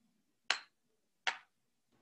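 Two short, sharp clicks, a little under a second apart.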